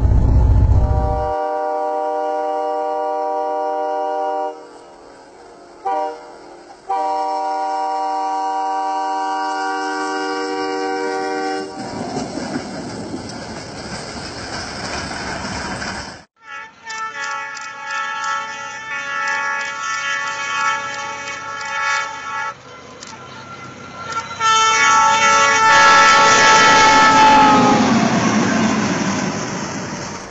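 Locomotive air horns sounding long chord blasts of several tones, four times, with a stretch of rushing noise from a train throwing snow between them. In the last blast the horn's pitch drops as the train passes.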